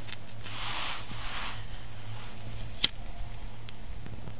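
Small handling noises of fire-starting gear: a short scraping hiss about half a second in, then a few sharp clicks, the loudest a little before three seconds, over a low steady hum.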